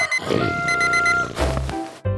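Electronic alarm-clock beeping, two quick runs of about four high beeps each, as a cartoon waking-up sound effect over children's music. Low thumps come near the end.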